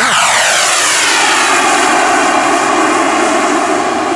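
Swiwin 80-newton turbine of a model T-45 Goshawk jet at takeoff as the jet lifts off and passes. Its whine falls sharply in pitch in the first second, then settles to a steady jet roar as it climbs away.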